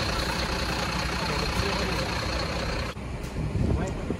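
BharatBenz truck's diesel engine idling steadily. About three seconds in it cuts abruptly to the quieter sound of the truck on the move, heard from inside the cab.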